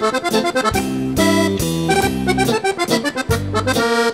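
Piano accordion playing a tune in quick, rhythmic notes and chords over low bass notes.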